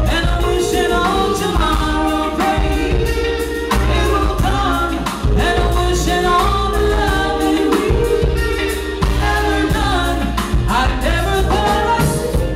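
A female lead vocalist singing a soul melody live, with long held and bending notes, over a band with a heavy bass line and drums.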